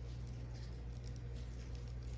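Quiet room tone: a steady low hum with faint, scattered rustling and light ticks.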